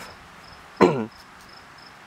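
Insects chirping in quick, even high pulses, about four or five a second. About a second in, a man briefly clears his throat.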